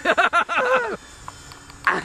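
Men laughing in a quick run of bursts for about a second, then a quieter gap with a faint steady hum, and another laugh near the end.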